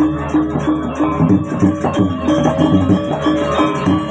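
Balinese gamelan playing: metal keyed instruments ringing a fast, repeating pitched figure, with quick, evenly spaced cymbal strokes above.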